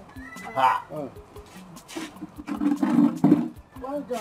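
People's voices in wordless exclamations: a short call about half a second in and a longer, drawn-out one around three seconds in.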